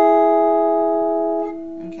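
Electric guitar ringing out a major third: two plucked notes on the top two strings sound together and slowly fade, the higher note cut off about one and a half seconds in while the lower one rings on.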